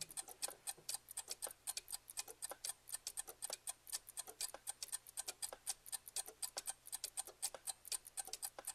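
Quiet, rapid, irregular crackling clicks, about eight to ten a second, over a faint low hum.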